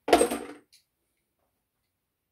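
A small metal part or hand tool set down hard on metal: one sharp clank with a brief ringing that dies away within half a second, followed by a faint click.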